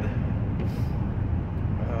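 Steady low rumble of car engine and road noise heard inside the car's cabin.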